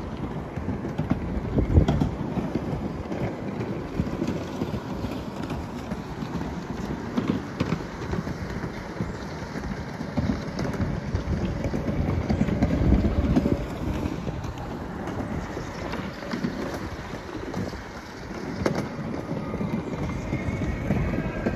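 Wind buffeting the microphone: an uneven low rumble that swells and eases, loudest about two seconds in and again past the middle, with a few faint clicks.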